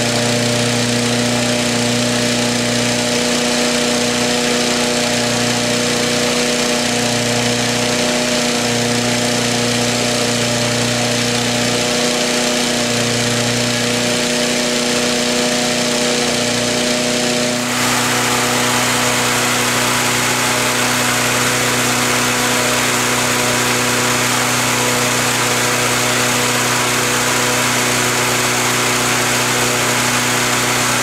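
Petrol-engine balloon inflator fan running steadily, blowing cold air into a hot-air balloon envelope during cold inflation. About eighteen seconds in, the sound changes suddenly to a louder rush of air from the fan with the engine less prominent.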